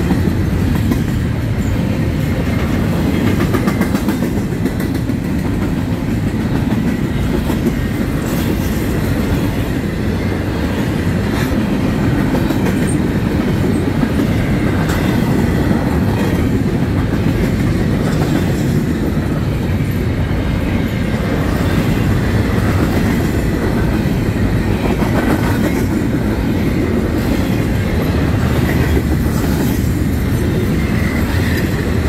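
Loaded double-stack container well cars of a freight train rolling past at steady speed: a continuous rumble of steel wheels on the rails, with clicks over rail joints.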